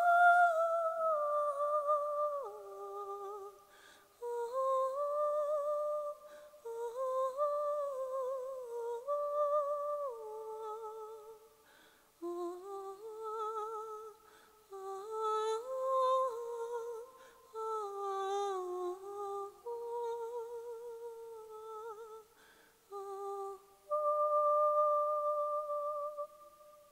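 A woman's unaccompanied solo voice singing a slow melody without words, the notes held with vibrato, in phrases broken by short pauses. It closes on a long steady note near the end.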